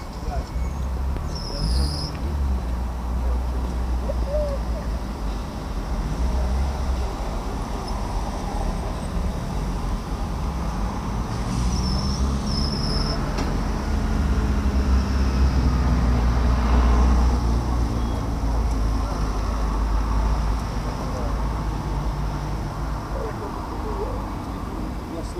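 Street traffic ambience picked up by an action camera's microphone: a steady low rumble with a vehicle passing, loudest about 17 seconds in. Brief high-pitched squeaks come near the start and again about halfway through.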